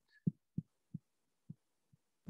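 Five short, soft, dull thumps at uneven intervals, the last one faint.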